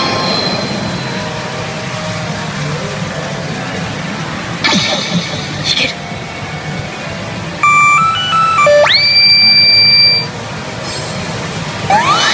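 CR Evangelion 8Y pachinko machine playing its reach music and sound effects. A run of stepped electronic beeps sweeps quickly upward into a long, steady high tone that stops sharply, and a rising whoosh comes near the end.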